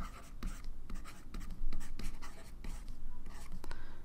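A stylus writing by hand on a tablet: irregular short scratches and taps as small characters are drawn stroke by stroke.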